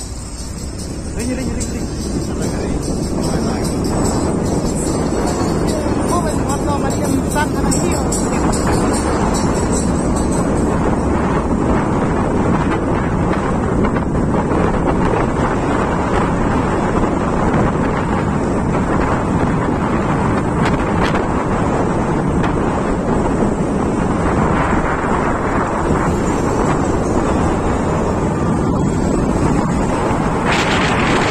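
Steady, loud road and engine noise of a moving vehicle, with wind buffeting the microphone, mixed with indistinct voices and music.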